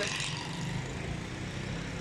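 Steady low hum of a vehicle engine running, under an even background hiss.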